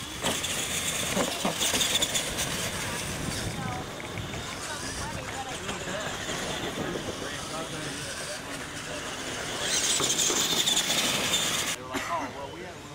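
Radio-controlled monster trucks racing off on a dirt track, giving a loud high hiss of motors and tyres for the first few seconds and another loud burst near the end. Voices talk in the background.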